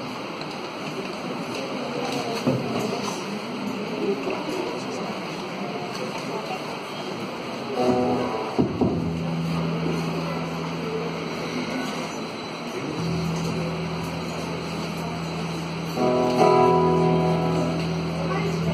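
Room murmur and shuffling, then about eight seconds in an instrument starts playing held chords over a steady low note, with a fuller chord coming in near the end: the instrumental introduction before the group starts singing.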